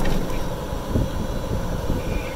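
Golf cart driving along a paved road: a steady low rumble of the cart running, its tyres and the wind.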